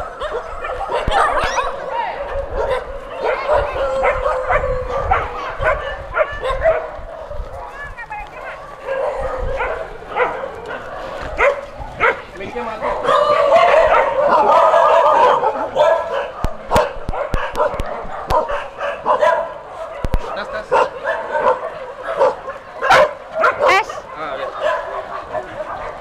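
A large pack of mixed-breed shelter dogs barking together, many at once, loudest a little past halfway.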